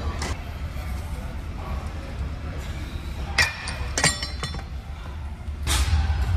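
Metal gym weights clinking: two sharp clinks with a brief ring, about three and a half and four seconds in, over a steady low hum.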